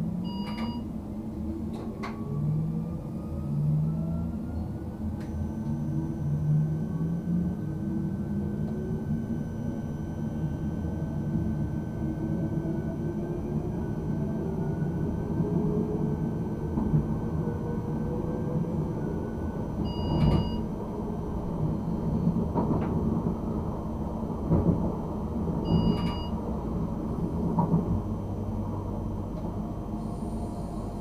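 RegioPanter electric multiple unit accelerating from a standstill, heard from the driver's cab: the traction motor and inverter whine rises steadily in pitch over the first half, over the rumble of the wheels on the track. Short electronic beeps sound three times, once just after the start and twice later on.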